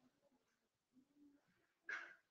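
Near silence: faint room tone with a few brief, faint sounds, the loudest a short burst near the end.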